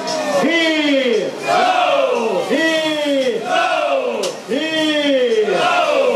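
A crowd shouting a carnival cheer together, a run of loud unison calls about one a second, each rising then falling in pitch.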